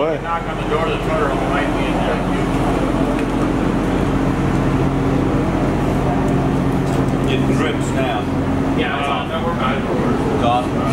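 A steady mechanical hum of several even tones comes in about two seconds in and stops shortly before the end, over a constant background noise, with voices nearby.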